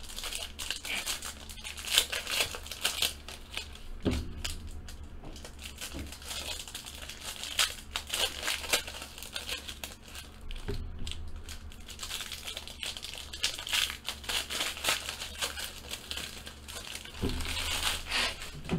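Foil wrapper of a trading card pack crinkling and tearing as it is opened by hand, with irregular crackles throughout and a few soft knocks.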